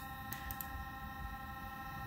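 Quiet room tone with a faint steady whine of several high tones held together, and a few soft ticks.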